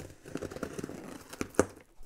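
Snap-off utility knife slicing through packing tape along a cardboard box seam: a quick run of small scratchy ticks, with a sharper snap about one and a half seconds in.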